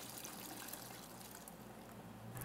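Melted beeswax-blend candle wax running from a wax melter's spigot into a metal pitcher, a faint, steady pour that thins out near the end.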